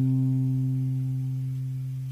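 Steel-string acoustic guitar's final strummed chord ringing out, its notes held steady and slowly fading.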